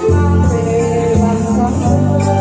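Live music: a woman singing a ballad to electronic keyboard accompaniment, with sustained organ-like chords.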